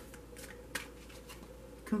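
A tarot deck being shuffled by hand: a few brief, soft rustles and flicks of the cards, spaced irregularly.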